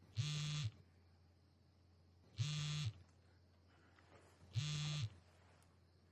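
Mobile phone vibrating with an incoming call: three half-second buzzes about two seconds apart.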